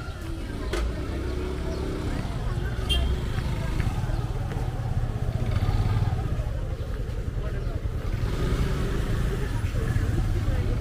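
Busy street ambience: small motorcycle and scooter engines running and passing, over a steady traffic rumble, with the voices of passers-by chatting.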